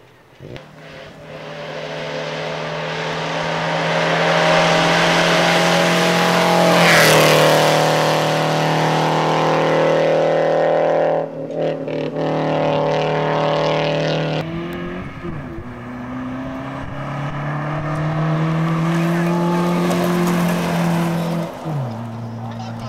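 Rally cars driven hard on a dirt road, engines at high revs with the note climbing and then dropping sharply twice. The sound cuts abruptly between cars a couple of times.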